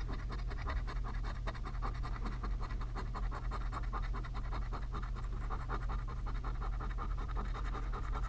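A coin scratching the coating off a paper scratch-off lottery ticket in quick, rapid strokes.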